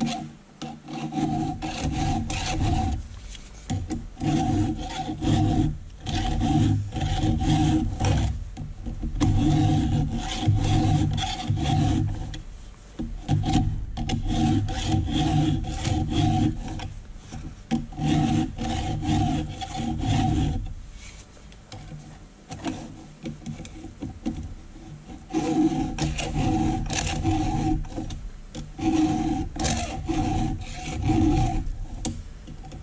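Steel files in a PFERD CS-X chain-sharpening file guide rasping across the cutter teeth of a chainsaw chain, in repeated strokes, each about a second long, with brief gaps between them. Each stroke carries a steady metallic ringing. The strokes pause for a few seconds about two-thirds of the way through, then resume.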